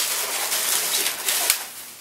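Latex 260 modelling balloons squeaking and rubbing against each other as they are twisted together by hand, with one sharp click about one and a half seconds in.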